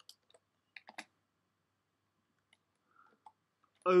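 A few scattered computer keyboard keystrokes, quiet individual clicks with gaps between them, mostly in the first second.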